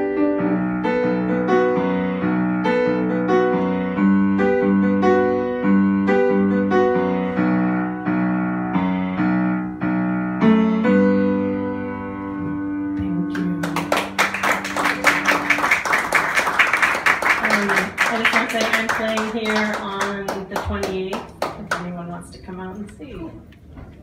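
Piano playing a song's closing chords, ending on a long held chord, then an audience applauding for about eight seconds from a little past the middle.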